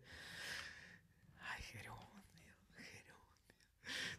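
Faint whispering from a man close to the microphone, in short unvoiced snatches, in an otherwise near-silent pause.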